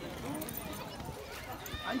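People talking and calling out, with the hoofbeats of horses moving on the dirt of an arena.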